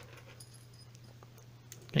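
Near quiet: a steady low hum with a single faint click about a second in, as small metal lock parts are handled. A voice starts right at the end.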